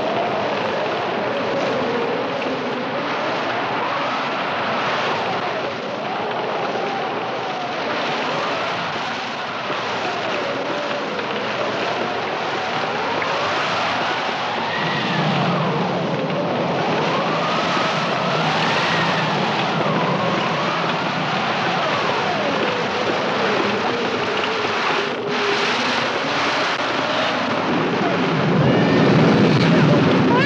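Storm wind howling: a steady rushing with a whistling tone that rises and falls slowly, and a low rumble joining about halfway through.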